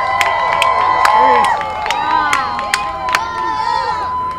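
Crowd of spectators cheering, whooping and shouting all at once, with sharp clap-like cracks scattered through and a steady high-pitched tone held underneath.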